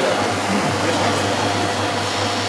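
Single-disc rotary floor machine running steadily, its white pad buffing oil into a parquet floor, a constant whirring with a low hum.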